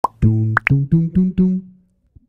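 Cartoon-style pop sound effects, quick rising blips, one at the start and two about half a second in, over a short bouncy run of musical notes that ends on a held note and fades out.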